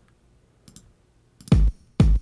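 A couple of faint clicks, then about a second and a half in a house kick drum from the Vinyl House Drums plugin starts playing on the beat, one hit every half second at 125 BPM. Only the kick is heard because the kit's other drum sounds are routed to separate plugin outputs.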